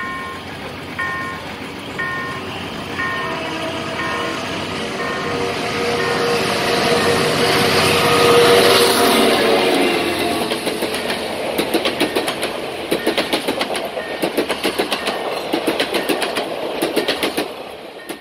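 Level-crossing warning bell ringing about once a second for the first few seconds. Then a General Motors G-22 CU diesel locomotive hauling six passenger coaches passes close by, loudest about eight seconds in, followed by a rapid clickety-clack of the coaches' wheels over the rail joints.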